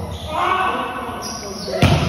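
Voices chattering in a large, echoing hall, with one sharp smack near the end.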